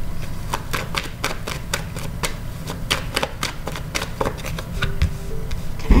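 Tarot cards being shuffled and dealt by hand: a run of quick, sharp card clicks and snaps, a few a second.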